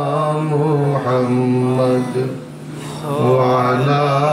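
A man chanting Arabic salawat, blessings on the Prophet, in long held notes that waver in pitch. The chant drops briefly about halfway through, then picks up again.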